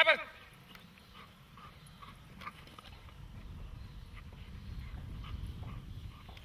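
A single loud, short vocal call that falls in pitch, right at the start. After it comes a low rumble that builds over the last few seconds.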